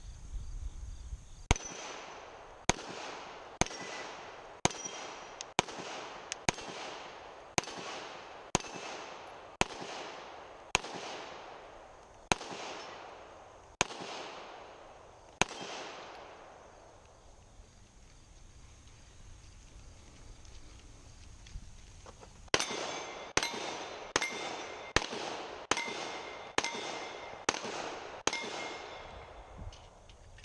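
Handgun shots at steel plate targets, each crack followed by a short ring of struck steel and an echo: about fourteen shots at roughly one per second, a pause of several seconds, then a faster string of about eight.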